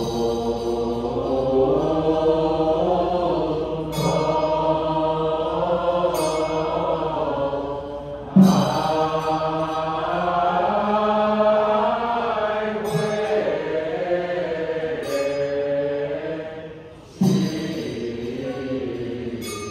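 Buddhist liturgical chanting: voices intoning a sutra or repentance liturgy in long, slowly moving melodic lines. Twice the chant fades briefly and then starts again abruptly with a sharp attack.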